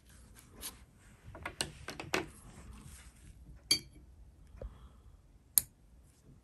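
Faint brushing and rustling of a soft Chinese painting brush working colour on paper, followed by two sharp clicks, the loudest sounds, a little past halfway and near the end.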